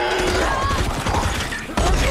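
Rapid gunfire from a drum-magazine automatic shotgun, several shots in quick succession.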